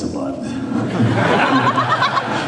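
Many people laughing and chuckling, swelling about a second in, with a man laughing close to a handheld microphone.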